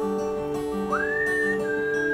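Whistled melody over a plucked guitar accompaniment with a steady sustained note beneath; about a second in the whistle slides up to a higher note and holds it. Low plucked notes repeat about twice a second.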